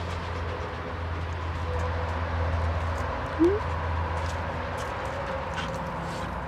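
A Siberian husky gives one short rising whine about three and a half seconds in, over a steady low hum.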